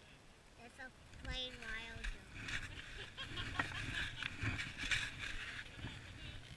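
A voice calls out in a drawn-out, held tone about a second in. It is followed by a few seconds of indistinct voices mixed with scattered clicks and rustling close to the microphone.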